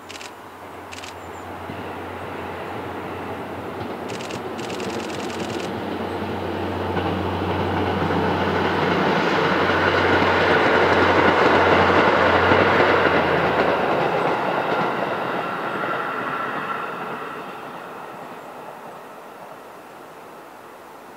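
JR East KiYa E195 series diesel rail-transport train passing by. Its low engine hum and the noise of its wheels on the rails build up over about ten seconds, peak, and then fade away.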